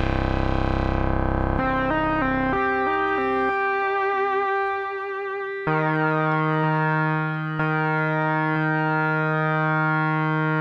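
Moog Muse analog polysynth playing a hard-synced oscillator lead, oscillator 2's pitch swept by the filter envelope. Several held notes change pitch early on, with vibrato wobbling the tone in the middle. In the second half a low note is struck about once a second, each with a falling, tearing sweep of overtones: the classic sync sweep.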